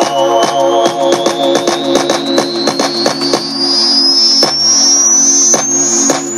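Electronic music played live by triggering soundpack samples from a Launchpad pad controller: a repeating synth chord pattern with sharp drum hits, under a synth sweep that rises steadily in pitch. The low bass notes drop out about four seconds in.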